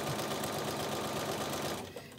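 Bernina sewing machine stitching a seam through quilt fabric pieces, running steadily at speed and stopping near the end.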